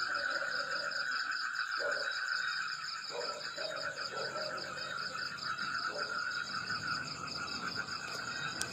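Steady night-time chorus of trilling animal calls: a pulsing trill at a middle pitch and a higher one run together without a break, with a few short, lower calls now and then.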